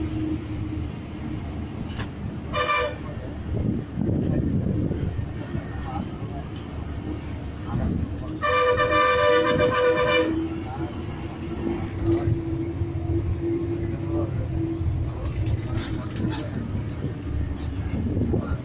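A bus engine drones steadily from the back seats while a vehicle horn sounds twice: a short blast about three seconds in, then a long blast of nearly two seconds around nine seconds in.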